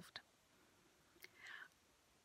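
Near silence in a pause between spoken sentences. There is a faint mouth click a little over a second in, then a soft intake of breath.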